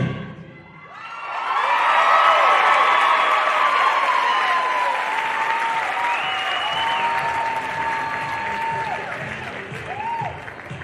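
Audience applauding and cheering at the end of a dance routine. The clapping swells about a second in and fades slowly, with high whoops and shouts and one long held scream over it.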